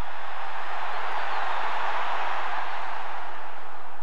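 Large stadium crowd making a steady roar of cheering and clapping.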